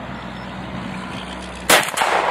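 A single shot from a Tippmann Armory rolling-block rifle, a sharp report near the end, over a steady low hum.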